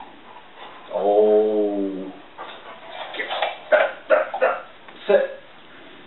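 A standard poodle whines once, a steady held note lasting about a second, followed by a run of short, sharp sounds over the next few seconds.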